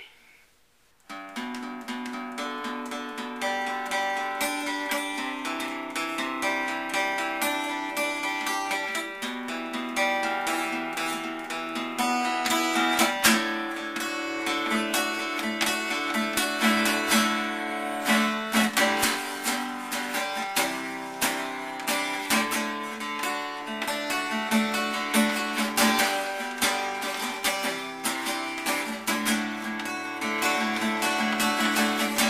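Acoustic guitar playing an instrumental intro. It starts about a second in with picked notes and grows louder and fuller from about halfway, with sharper, more frequent strokes.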